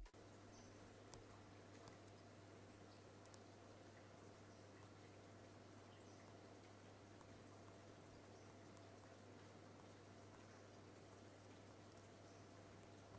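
Near silence: faint, scattered soft clicks of a single laptop keyboard key being pressed over and over, a mushy key that sticks and often fails to register, over a steady low hum.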